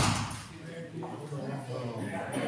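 A single hard knock right at the start, echoing through the hall for about half a second, followed by men's voices talking.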